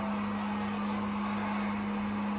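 A steady low hum over a constant background hiss, with no change in level.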